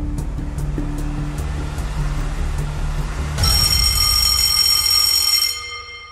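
Game-show countdown music with a ticking beat over a low bass. About three and a half seconds in, a bright ringing time-up signal cuts in, rings for about two seconds and then fades.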